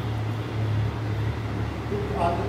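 A steady low machine hum with a constant even noise over it, unchanging throughout.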